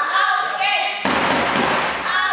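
Wrestling spectators chanting and shouting, with thuds; about halfway through, a sudden burst of loud crowd noise lasting about a second.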